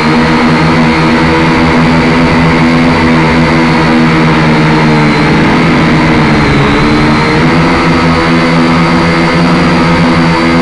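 Small drone's electric motors and propellers running loud and steady as it climbs. Their whine dips in pitch about halfway through, then comes back up.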